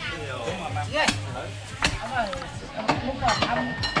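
Whole roast pig being cut up with a knife: about five sharp knocks, irregularly spaced, over people talking.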